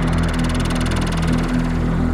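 Progressive psytrance: a rolling synth bassline that changes note several times a second, under a sweeping, filtered high synth texture.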